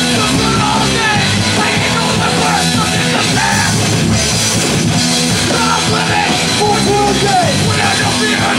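Live punk band playing: electric guitars and a drum kit going hard at a steady loud level, with vocals into a microphone.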